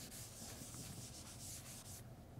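Faint rubbing of a blackboard being wiped clean by hand, a quick run of short scrubbing strokes across the chalk.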